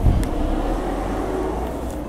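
A steady engine rumble with a brief low thump at the start.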